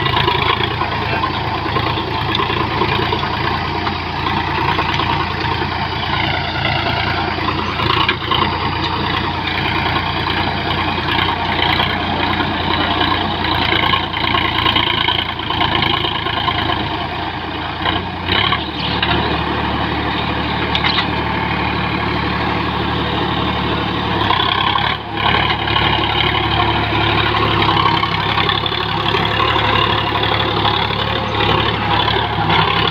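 Sonalika tractor's diesel engine running steadily under load as it drives an Amar rotavator tilling soil. The engine note shifts slightly about two-thirds of the way through.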